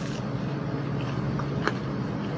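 A bite into a crisp pizza crust and chewing: a sharp crunch as it opens and another small crunch near the end, over a steady low background hum.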